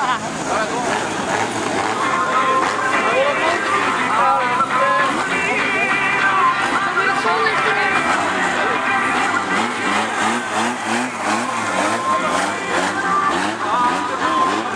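Several four-cylinder autocross race cars' engines running and revving through a dirt-track bend, one rising rev after another about two-thirds of the way through, under a voice and music from loudspeakers.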